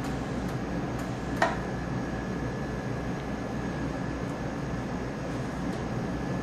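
Steady low hum and hiss of equipment and ventilation in the treatment room, with a faint steady high whine and one short click about a second and a half in.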